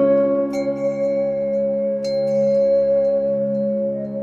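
Background music: a calm ambient piece with a steady low drone and a held tone, and new ringing notes about half a second in and again about two seconds in.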